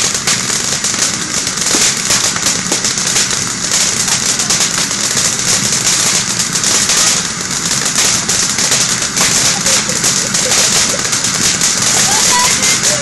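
Ground fountain firework spraying sparks: a loud, steady, dense hiss full of fine crackling.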